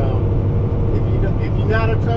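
Steady low drone of a semi-truck's engine and road noise inside the cab while cruising at highway speed, with a voice coming in near the end.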